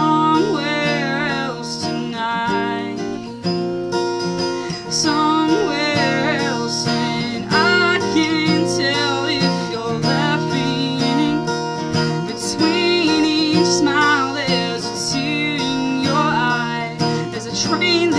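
Acoustic guitar strummed steadily through a slowed-down rock song, with a woman's voice singing along in long, wavering notes.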